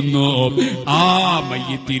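A man's voice chanting in a drawn-out, melodic style, holding and bending long notes rather than speaking, with a short break just before the end.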